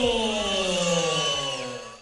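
A sustained pitched sound with several overtones, gliding slowly and steadily down in pitch and fading out near the end.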